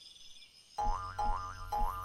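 Cartoon spring 'boing' sound effect, three short rising twangs in quick succession, over a low hum and faint music.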